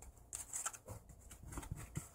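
Faint rustling and light taps of a stack of Pokémon trading cards being handled and moved by hand, a few soft scattered clicks.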